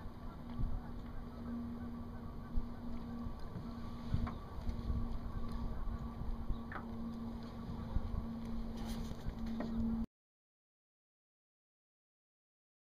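Outdoor boat ambience with wind rumbling on the microphone over a steady low hum, broken by a few short knocks and clicks as a fishing rod and line are handled in a small aluminium boat. The sound cuts off abruptly about ten seconds in.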